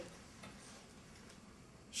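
Quiet classroom room tone: a faint, steady hiss with no clear event.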